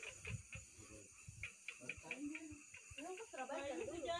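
Quiet outdoor ambience with faint, irregular clicks and knocks, then people talking faintly from about three seconds in.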